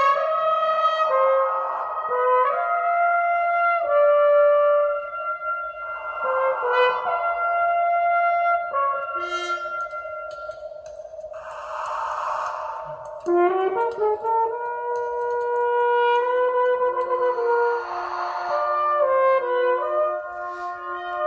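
French horn playing held notes that step from pitch to pitch, transformed by live computer electronics over a steady sustained drone. Bursts of hissing noise swell up three times, strongest about twelve seconds in.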